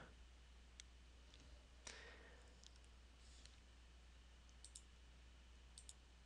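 Near silence: a steady low hum with a few faint, scattered clicks, about one a second, from a computer being used to paste and edit code.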